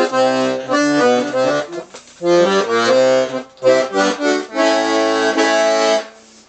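Restored Hohner Student VM piano accordion with 48 bass, playing short phrases of bass notes and chords with brief breaks, ending on a long held chord. Freshly refurbished with new valves and wax and tuned to concert pitch, with four voices on the left-hand side, it sounds bright and powerful.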